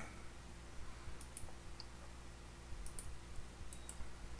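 Several faint, short clicks of a computer being operated, mostly in close pairs, over a low steady hum; they come as the presentation is advanced to the next slide.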